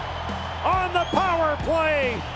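Excited shouting from a play-by-play commentator over a steady background music bed, starting about half a second in.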